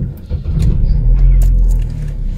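Car engine heard from inside the cabin: a low rumble that swells about half a second in and eases near the end.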